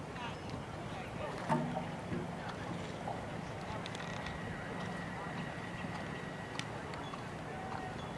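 Outdoor background noise with faint, indistinct voices. There is a short knock about a second and a half in, and a steady high tone for about two and a half seconds in the middle that ends with a click.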